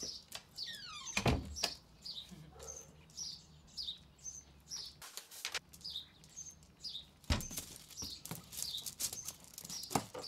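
A small bird chirping over and over, short falling high notes about twice a second. Two heavy thumps stand out, one about a second in and one about seven seconds in.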